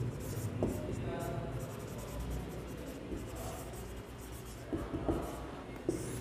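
Marker pen writing on a whiteboard: quiet scratchy strokes with a few light taps of the pen on the board.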